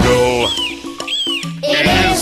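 A bird-of-prey cry, used as the eagle's call, sounds twice over the backing music of a children's song: two short high cries, each rising and then falling in pitch. A sung line ends just as the first cry begins.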